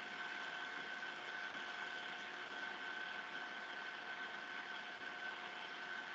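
Faint, steady background hiss with a thin, constant high-pitched whine running through it: the line and room noise of the recording.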